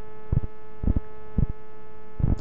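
Steady electrical mains hum with a buzzing row of overtones, picked up on a webcam microphone's audio, with a few low thumps about every half second.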